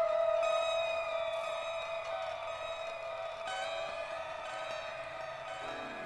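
Instrumental music: long held notes fading slowly, with new notes coming in every few seconds.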